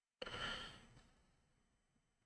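A man's sigh: one audible breath out that starts suddenly and fades away over about a second.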